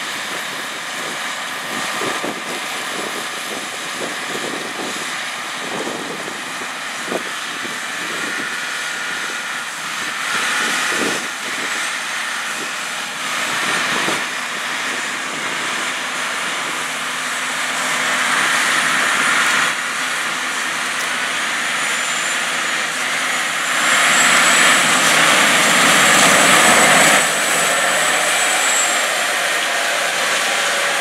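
John Deere 9520RX track tractor running under load while pulling a grain cart, with a combine working alongside early on. The steady engine and track noise swells and is loudest a few seconds before the end as the tractor passes close, and a faint high whine sounds over the later part.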